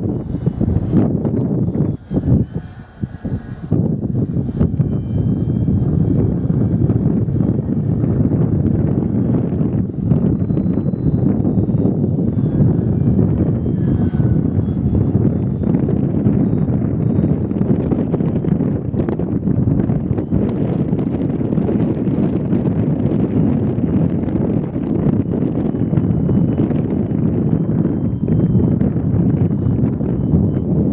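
Steady wind rumbling on the microphone, easing briefly about two seconds in, over a faint high whine from the Multiplex FunCub's electric motor and propeller that wavers slowly in pitch as the model flies high overhead.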